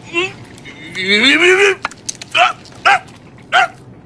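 A man's climactic vocal cries: a long cry that rises and then falls in pitch, followed by three short, sharp yelps.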